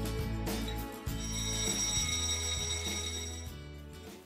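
Background music with a bright, bell-like timer chime that starts about a second in and rings steadily for about two seconds before fading, marking the end of a countdown.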